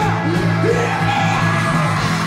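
Live rock band playing a song: electric guitar, bass guitar and drums together, with a voice singing over them.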